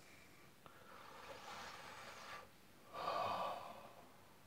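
A person breathing close to the microphone: a long, faint breath, then a louder, shorter breath about three seconds in.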